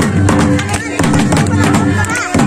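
Santali festival drumming: a tamak' kettle drum beaten with sticks and laced tumdak' barrel drums played in fast, dense strokes, over a held, pitched melodic sound.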